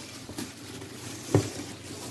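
Brown kraft packing paper rustling and crinkling as hands shift round wooden niches inside a cardboard box, with a brief voice sound about two-thirds of the way in.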